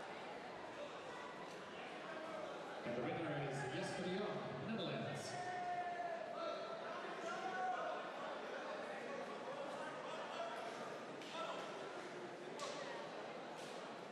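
Voices echoing in a large sports hall, clearest a few seconds in, over steady hall noise, with a few sharp knocks.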